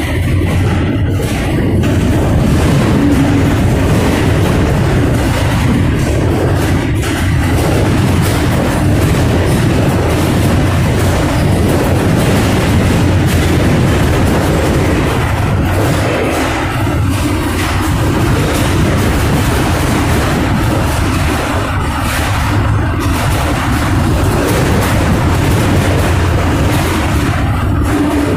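Loud, steady rumbling and rattling of a freight boxcar rolling on rough, badly maintained track, heard from inside the car, with a few sharper knocks and jolts.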